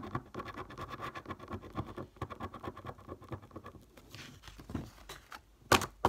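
Rapid scraping strokes of a £5 scratchcard's coating being scratched off, for about four seconds. After a quieter stretch there is a short louder swipe near the end.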